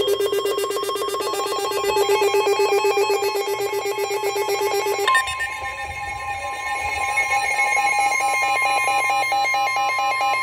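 Several Midland weather alert radios sounding their warning alarms together: rapid, pulsing electronic beeping. About five seconds in, the low pulsing beep gives way to a steady single-pitch tone with a higher pulsing beep over it, typical of the NOAA weather radio warning alert tone, here signalling a severe thunderstorm warning.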